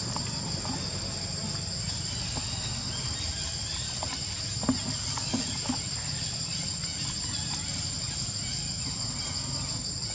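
A steady high-pitched chorus of insects, two unbroken shrill tones, with a few short knocks about halfway through.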